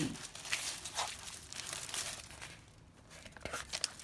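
Paper rustling and crinkling as the pages of a handmade junk journal are turned by hand, busiest in the first two seconds, with a few light clicks near the end.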